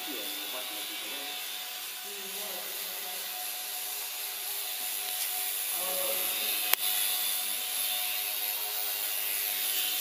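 Micro E-flite 4-Site model plane's small electric motor and propeller giving a steady, thin high whine over hiss, with faint voices in the background and a single sharp click about seven seconds in.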